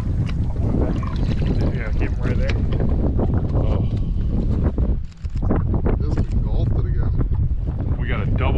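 Wind buffeting the microphone, a steady low rumble that dips briefly about five seconds in, with water splashing at the boat's side and short indistinct voices.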